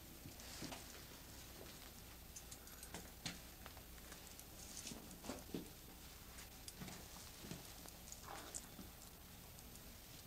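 Faint, scattered footfalls and light knocks on a wooden floor, with soft shuffling and rustling between them.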